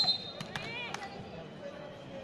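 A volleyball bouncing on the hard court: a few sharp knocks in the first second, over steady crowd chatter, with a short high call from the crowd among the knocks.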